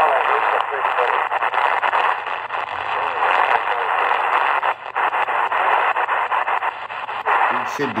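XHData D219 shortwave radio being tuned quickly across the 49-metre band, its speaker giving out a dense rushing noise with crackles and no clear station, dipping briefly a little past the middle. The receiver is overloading on its own telescopic antenna.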